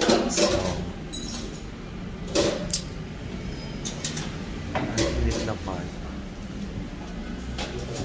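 A man's voice in a few short, indistinct bursts, over a low steady hum.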